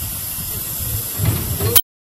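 Steam hissing steadily from the narrow-gauge steam locomotive 99 2324-4, with a low rumble underneath that swells a few times. It cuts off suddenly near the end.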